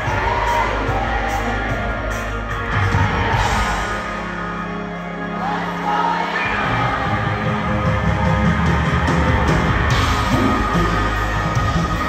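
Live concert music from a band on stage, with singing over it and yells from the crowd. The heavy bass and drums drop away for a moment in the middle, then come back in full about halfway through.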